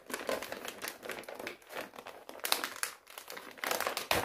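Clear plastic packaging crinkling and rustling as a bag of toy stuffing is handled and pulled out, in irregular crackly bursts that are loudest about two and a half seconds in and again near the end.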